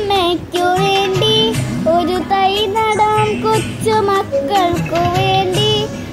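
Background song: a high voice singing a melody with held, wavering notes over an instrumental backing track.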